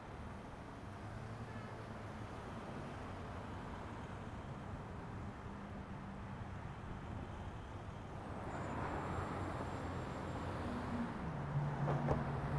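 Street ambience of road traffic: a steady low engine hum, growing louder from about two-thirds of the way in as a vehicle draws closer.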